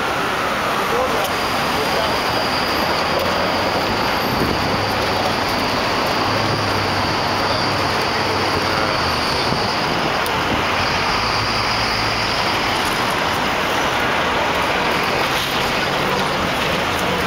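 Steady busy-street traffic noise from cars and taxis, with a deeper engine hum from about six to twelve seconds in.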